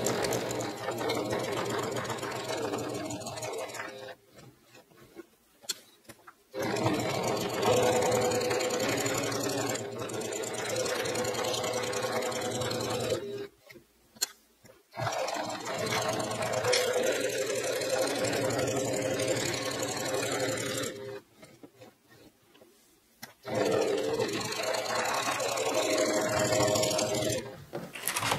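Singer electric sewing machine stitching a seam in four steady runs of several seconds each, with short pauses between them where the work is pivoted at the corners with the needle down.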